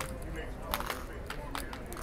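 Casino table background: faint distant voices with a few light clicks.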